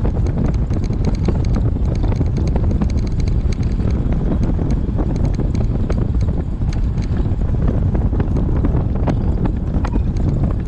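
Wind buffeting the microphone on a moving golf cart: a steady low rumble, with frequent small clicks and rattles as the cart and camera mount jolt over the road.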